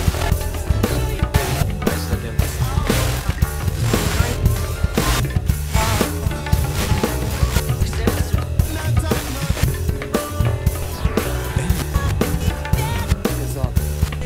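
Instrumental rock and soul groove: electric guitars and bass guitar over programmed drums and percussion, with a steady beat.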